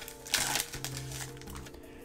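Foil trading-card booster-pack wrapper crinkling briefly as it is pulled open, about half a second in. Quiet background music with held tones plays under it.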